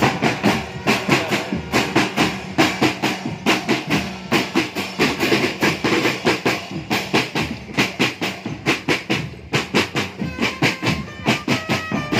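Marching drum band's snare drums playing a fast, driving rhythm, starting sharply. Near the end, trumpets join in with held notes.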